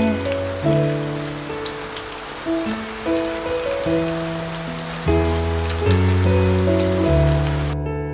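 Steady rain falling, laid over slow instrumental music with sustained chords; the rain cuts off suddenly near the end while the music carries on.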